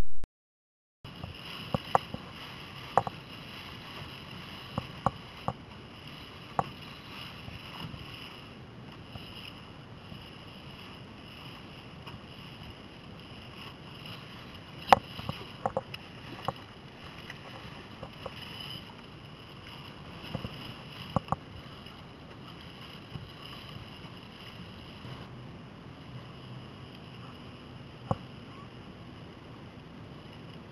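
Onboard sound of a Laser dinghy sailing, starting about a second in: a steady rush of wind and water with scattered sharp knocks and clicks from the hull and rigging.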